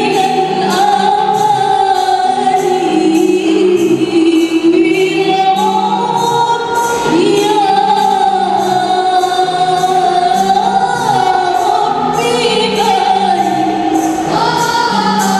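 Group of young women singing a qasidah together in long, ornamented held notes, over rebana frame drums beating a steady rhythm about twice a second.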